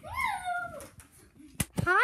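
A child's high-pitched squeal: one cry that rises and then falls in pitch during the first second. It is followed by a sharp click about a second and a half in and a short knock just after it.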